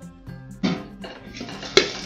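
A steel plate used as a lid being lifted off a pressure cooker full of popped popcorn: metal scraping, with a sharp clank near the end. Background music plays throughout.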